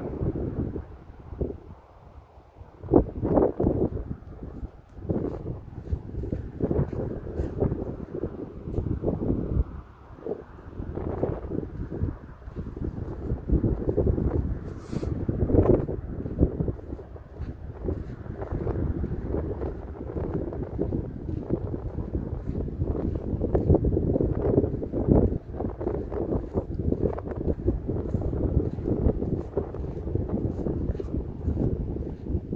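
Wind buffeting the microphone in uneven gusts, a low rumbling noise that keeps rising and falling.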